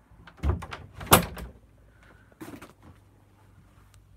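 A door being shut: a couple of knocks, then a sharp click and thud about a second in, and a lighter knock a second and a half later.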